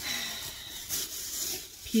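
Rustling and rubbing of shopping bags and packaging as items are handled, with a few faint scratchy strokes.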